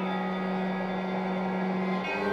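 Music: one low note held steadily, with its overtones, in a bowed-string passage, over a faint grainy hiss.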